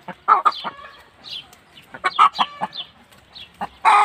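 A mixed flock of chickens, hens and roosters, clucking in short bursts, with a louder, drawn-out call near the end.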